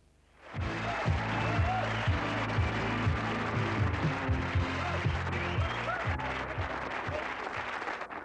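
Studio audience applause and cheering over music, coming in suddenly about half a second in after near silence, then running steadily.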